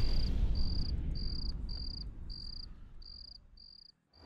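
Cricket chirping in an even rhythm, a short high chirp about every 0.6 seconds, as night ambience. Under it a low rumble fades away until it is almost gone near the end.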